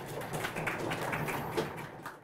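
Audience applauding at the end of a talk: a dense, steady run of many claps that begins to die away near the end.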